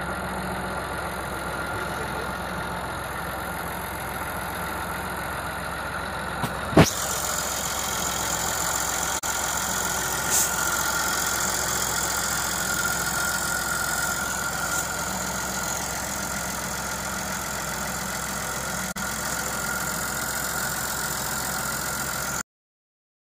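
Massey Ferguson tractor's diesel engine running steadily. A single sharp click about seven seconds in is the loudest moment.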